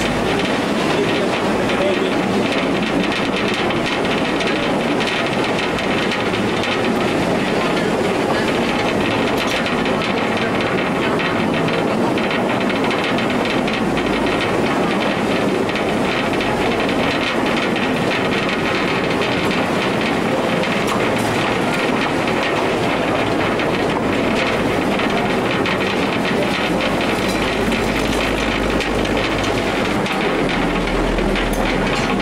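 Mine train running steadily through a rock tunnel: a continuous loud rumble and rattle of the cars on the track. The low rumble deepens near the end.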